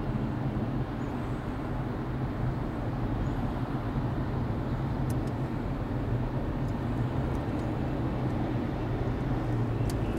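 Steady highway road and engine noise heard inside a vehicle's cabin cruising at about 60 mph, with a tractor-trailer running close alongside.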